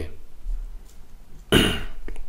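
A single short cough about one and a half seconds in.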